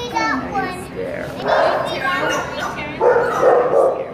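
Several dogs barking and yipping in kennels, with a high bending call near the start and bursts of barking about a second and a half in and again near the end.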